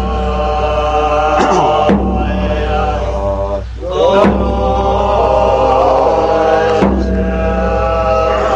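Tibetan Buddhist monks chanting prayers from scripture in deep, low, droning voices. The chant breaks off briefly for breath about every two to three seconds and then picks up again.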